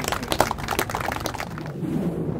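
Crowd applauding with scattered hand claps, thinning out and dying away about one and a half seconds in.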